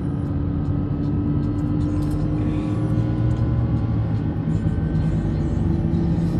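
Steady road and engine rumble inside a moving car's cabin.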